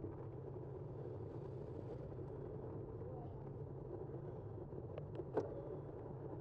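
Steady rumble of a bicycle rolling on asphalt, tyre and wind noise at the bike-mounted microphone. About five seconds in come three quick sharp clicks or knocks, the last one loudest.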